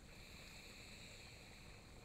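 Faint, steady trickle of a small backyard rock-garden fountain, the only sound in an otherwise near-silent moment.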